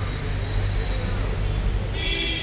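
Street noise: a steady low traffic rumble with indistinct voices.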